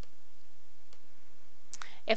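A single faint click about a second in, from the computer as a menu item is selected, over a steady low hiss.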